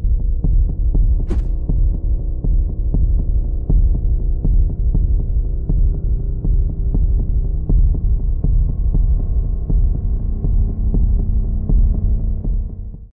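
A low, steady throbbing hum with an even pulse several times a second and a few held tones above it. A single sharp click sounds about a second in.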